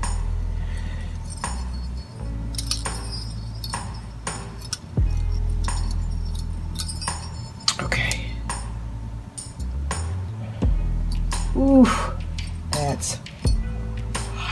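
Small metal jingle bells clinking in short, irregular jingles as they are handled and tied onto a ribbon bow, over background music.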